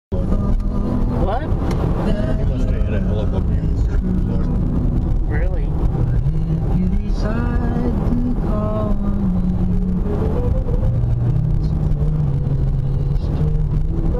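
A voice singing, with held notes and gliding pitch, over steady road and engine noise inside a moving car's cabin.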